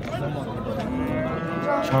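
A bull lowing: one long, steady moo that starts about a second in and carries on past the end, over the murmur of a crowd.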